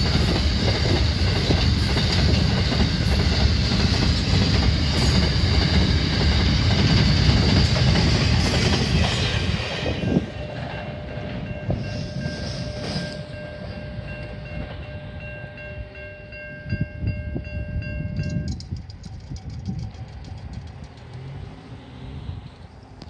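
Loaded container wagons of a long freight train rolling past close by, a loud steady rumble of wheels on rail for the first half. It then drops away, and a level crossing's warning bell rings steadily until it stops about three-quarters of the way through. A road vehicle passes near the end.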